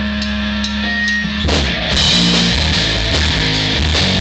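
Live rock band with electric guitars, bass and drum kit. Held, ringing chords give way about a second and a half in to the full band playing a driving beat, louder, with drums and a pulsing bass line.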